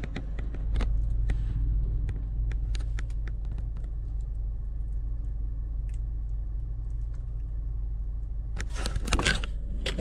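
Car engine idling, heard inside the cabin as a steady low hum. Over it, light clicks of a plastic food container being handled in the first few seconds, and a brief rustle near the end.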